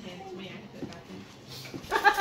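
A golden retriever whining, with people's voices low in the background.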